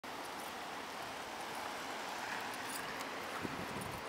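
Steady outdoor background hiss, with a few faint taps and a soft knock near the end.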